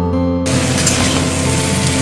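Diced vegetables sizzling in hot oil in a steel kadai, starting suddenly about half a second in, with acoustic guitar background music continuing underneath.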